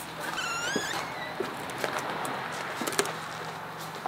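A high, wavering squeak-like call with a clear pitch, lasting about a second near the start, followed by steady outdoor noise with a few faint clicks.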